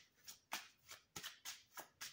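A deck of tarot cards shuffled by hand, overhand: short, soft card-on-card strokes about three times a second.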